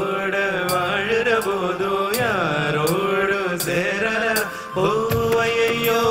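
Live band playing an instrumental passage of a Tamil film song: a melodic lead line that glides and bends in pitch over a steady bass, with hand percussion striking in time.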